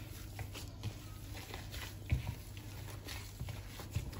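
A gloved hand squishing and kneading a soft mashed potato mixture in a plastic bowl, quiet and irregular, with two dull thumps: one about two seconds in and one near the end.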